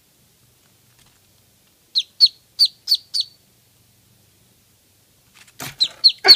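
Newborn Muscovy duckling peeping: five short peeps in quick succession, each sliding down in pitch. Near the end come a few knocks and the peeping starts up again.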